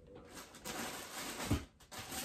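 Plastic-bagged clothing rustling and crinkling as hands rummage in a cardboard box, with a soft thump about one and a half seconds in.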